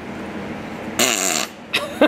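A young girl making her funny trick noise: a single half-second blast with a falling pitch, about a second in.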